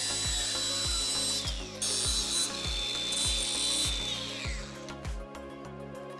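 Cordless angle grinder running against steel tubing with a steady high whine. It stops briefly about a second and a half in, runs again, and winds down about four seconds in. Background music with a steady beat plays underneath.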